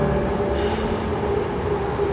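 Steady city traffic noise, vehicles going by along a street under an elevated structure.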